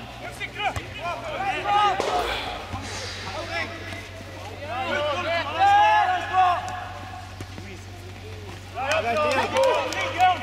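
Men's voices shouting on a football pitch in three bursts, with a sharp thud of the ball being kicked about two seconds in.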